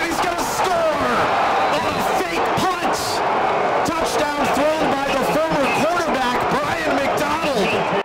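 Game broadcast audio: a play-by-play announcer's excited voice calling the run without a break, over steady stadium crowd noise.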